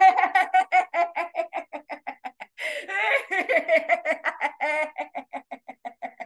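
A woman laughing deliberately on the vowel "e" in rapid staccato pulses, about five or six a second, as a laughter-yoga breathing exercise that empties the lungs. A little over two seconds in she takes a sharp, noisy breath in, then laughs on in the same pulses.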